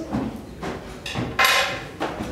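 Crockery knocking against a wooden serving tray: a small knock, then a louder, sharp clatter about one and a half seconds in.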